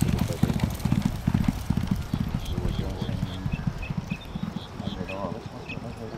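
Thoroughbred racehorse's hooves galloping on a dirt track during a workout breeze: rapid heavy hoofbeats, loudest in the first couple of seconds, then fading as the horse draws away.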